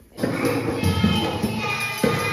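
A group of children singing a song together, starting suddenly about a quarter second in, with hand claps thumping along in time, in a large hall.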